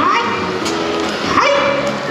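A high-pitched voice in short exclamations whose pitch slides up and down, rising about one and a half seconds in.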